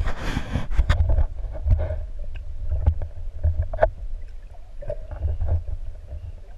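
Underwater camera audio: a muffled low rumble of water moving around the submerged housing, with scattered clicks and knocks and a short hissing rush at the start.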